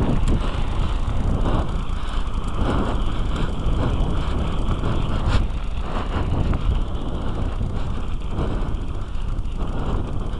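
Steady rumble of a Kona mountain bike rolling over a dirt road, heard through a helmet-mounted camera's microphone: tyre noise and wind on the mic, with a sharp click about five seconds in.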